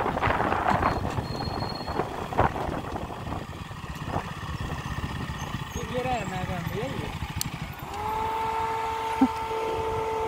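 Riding on a motorcycle: its engine runs under a rush of road and wind noise, with a few spoken words. Near the end a steady tone sets in and holds.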